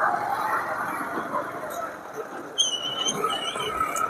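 Wind and road noise of a motorbike riding along at speed, a steady rushing sound. During the last second and a half, a high, slightly wavering whistle-like tone sounds twice.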